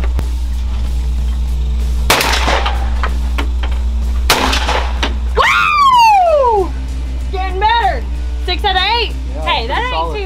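Two shotgun shots about two seconds apart, each a sharp report with a short ring-out, fired at clay targets. After them comes a woman's long exclamation falling in pitch, then further vocal sounds, all over steady background music.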